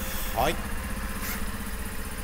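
Honda Super Cub C50's air-cooled single-cylinder 49cc SOHC engine idling steadily, with no worrying noises.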